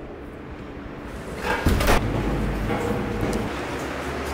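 A door shutting with a thud about a second and a half in, then a low steady hum.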